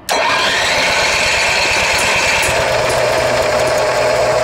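Cummins Onan RV generator's petrol engine cranking on its starter with the start switch held, turning over loudly and steadily without settling into a clean run. It is a generator that will not start, and it doesn't sound good.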